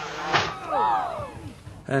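A single crash as a quad bike hits the top of a paddle steamer about a third of a second in, followed by a cluster of pitched tones that rise and fall for under a second.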